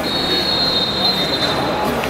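A single long, shrill whistle of two close high pitches, held for about a second and a half and then fading, over the steady murmur of the stadium crowd.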